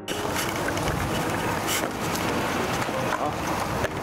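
Steady rushing outdoor noise, much of it wind buffeting the microphone, with a few brief rustles.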